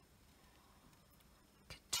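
Near silence: room tone, with one faint click shortly before a spoken word at the very end.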